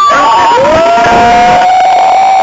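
Performers' voices holding a long, loud shouted cry: one voice's high note fades early on as a lower one rises about half a second in and holds steady, over the rumble of a moving metro carriage.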